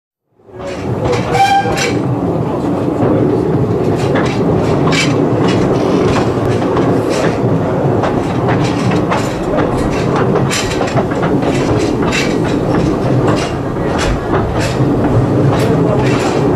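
Narrow-gauge train running on its track, with a steady rumble and irregular clicks and knocks from the wheels on the rails. There is a short high tone about a second and a half in.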